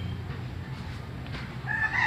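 A rooster starts a long crow near the end, over a low steady background hum.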